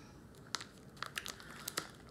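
Thin plastic pouch crinkling in several short, scattered crackles as it is picked up and handled: a steam-in-bag pouch of riced cauliflower.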